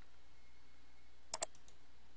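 Computer mouse button clicked twice in quick succession a little past the middle, stepping the simulator forward one instruction, over a faint steady background hiss.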